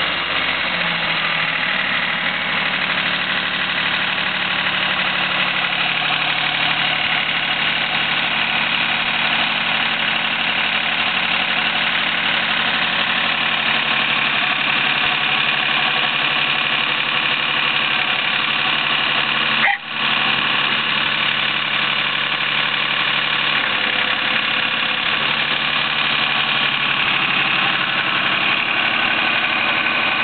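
Yanmar YM1401 compact tractor's diesel engine running, its revs rising in the first couple of seconds and then holding steady. The sound breaks off for an instant about two-thirds of the way through.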